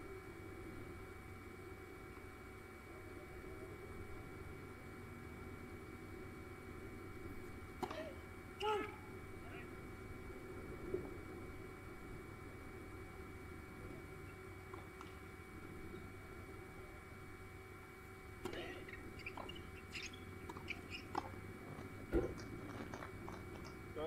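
Quiet tennis-court ambience with a steady electrical hum, a few brief distant voices, and one sharp knock about two seconds before the end.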